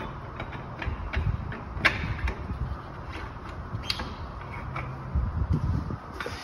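Metal clicks and clanks of a 5-inch large-diameter fire hose coupling being fitted and locked onto a fire engine's pump intake, with duller bumps of the heavy hose being handled. The sharpest clicks come about one to two seconds in and again near four seconds.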